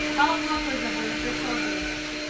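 Stick vacuum cleaner running steadily on a tiled floor, its motor giving a constant hum.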